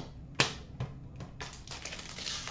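A few light clicks and taps from trading cards being handled and set down, the sharpest about half a second in, with a soft rustle starting near the end.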